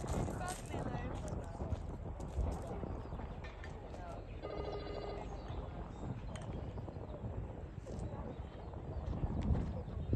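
Indistinct voices over a steady outdoor background, with a brief electronic ringing tone lasting about a second, starting about four and a half seconds in.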